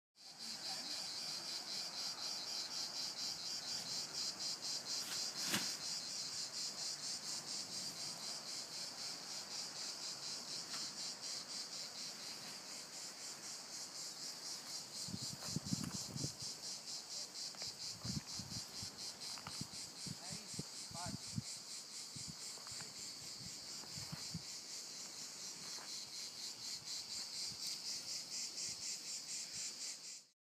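A steady chorus of chirping insects, high-pitched and rapidly pulsing. A single click comes early, and a few low thumps come about halfway through.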